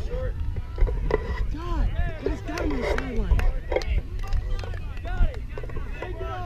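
Several voices shouting and calling out at once, overlapping and unclear, over a steady low rumble of wind on the microphone.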